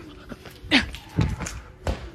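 A person's short yelp, falling in pitch, about three-quarters of a second in, then a sharp thump near the end as a large rubber play ball is struck and sent up.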